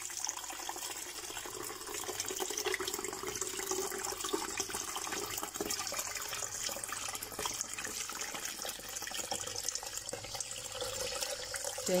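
Basil sherbet poured in a steady stream from a steel pot through a mesh strainer into a plastic pitcher, splashing and trickling onto the basil leaves caught in the strainer.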